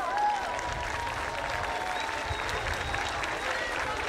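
Audience applauding: steady clapping from a crowd, with a few voices calling out over it.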